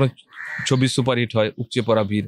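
A man speaking Bengali into press microphones. A short, harsh, rasping sound comes between his phrases about a third of a second in.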